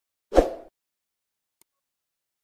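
A single short editing sound effect for an animated logo transition, lasting under half a second and starting about a third of a second in.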